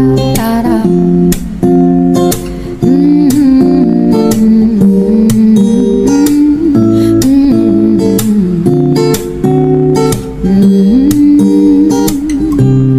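Background music led by acoustic guitar: an instrumental passage of plucked and strummed chords with no lyrics.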